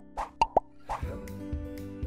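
Cartoon bubble-pop sound effects, a quick run of four plops in the first second, over soft background music.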